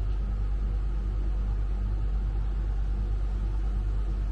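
Steady low rumble of the tow vehicle's engine idling, mixed with the caravan's Truma Aventa air conditioner running.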